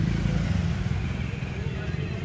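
A vehicle engine's steady low rumble at low speed in street traffic.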